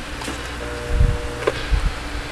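Handling sounds from the radio's controls: a soft knock about a second in, a sharp click, then a few light knocks, with a faint steady tone lasting under a second in the middle.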